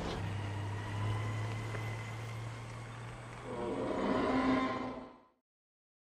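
Film sound of the jeep's engine running steadily as it drives off, then a loud roar from the Tyrannosaurus rex swelling about three and a half seconds in. Everything fades out quickly about five seconds in.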